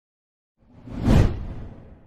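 A whoosh sound effect for a logo intro: it swells up about half a second in, peaks just after a second, and fades away near the end.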